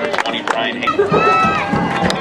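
Several voices shouting and calling out at once, overlapping throughout, with a few sharp clicks among them.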